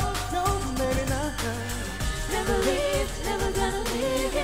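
Pop song performed live: singers' voices over an electronic backing track with a steady beat.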